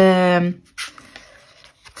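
A woman's voice drawing out the end of a word in a small room, then a short, nearly quiet pause with a faint brief sound about a second in.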